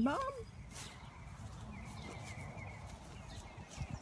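Quiet outdoor background with low rustle, a few soft footsteps through grass, and faint bird chirps about two seconds in.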